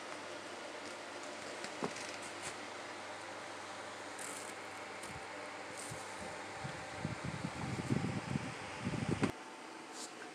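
Steady whir of a fan, with a few faint clicks. From about seven seconds in comes a louder stretch of low rumbling bumps that cuts off suddenly just before the end.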